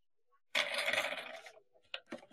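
Jewellery jingling and rattling as it is handled: a sudden burst about half a second in that lasts about a second and trails off, then a few short clicks near the end.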